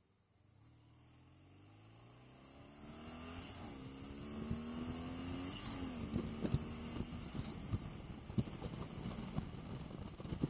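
BMW GS boxer-twin motorcycle accelerating through the gears, its engine note rising and then dropping at two upshifts before settling. Rising wind rush on the camera microphone with sharp buffeting thumps as speed builds.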